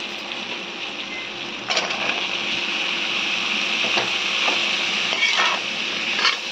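Onion-tomato masala and sliced spiny gourd frying in oil in a metal kadhai, a steady sizzle that gets louder about two seconds in. It is stirred with a metal spoon that scrapes and knocks against the pan a few times.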